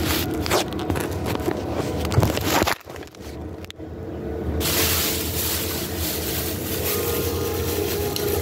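Handling noise from a phone being moved and repositioned: knocks, clicks and rubbing against the microphone, a short dip about three seconds in, then a steady hiss.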